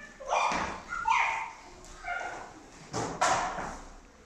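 Children imitating animal cries: several short, high-pitched bark-like yelps, the loudest pair near the end.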